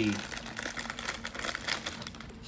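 Thin plastic packaging crinkling and crackling as it is handled, with many small irregular crackles, while a Hot Wheels mystery car is taken out of its bag.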